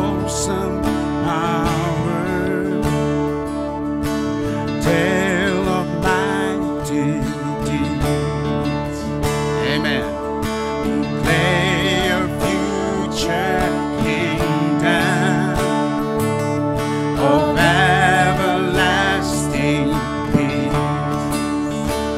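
A small band playing live: voices singing with vibrato over a strummed acoustic guitar and electric bass.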